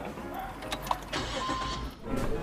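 Car engine running while the vehicle drives, heard from inside the cab.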